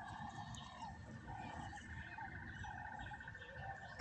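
Faint background of animal calls: a steady, rapidly pulsing high trill, with a few short, lower calls coming and going over it.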